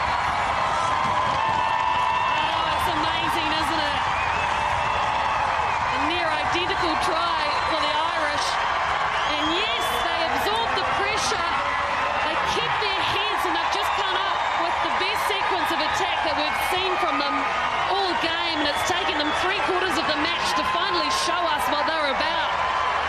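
Stadium crowd cheering and shouting without a break for a try just scored, with scattered claps and many overlapping voices.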